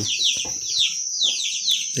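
Chicks peeping: a steady series of short falling chirps, about three a second, over a constant high-pitched tone.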